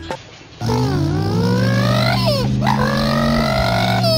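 A dog howling in long glides that rise and fall in pitch, over a steady low tone, starting about half a second in.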